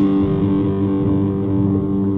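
Electric guitar picked over a rock backing track, holding sustained notes that ring steadily, with no drums or cymbals.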